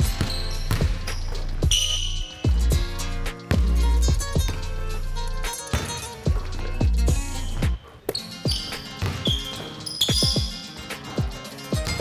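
Background music with a heavy bass beat, over a basketball being dribbled and bounced on a hardwood gym floor in irregular strikes.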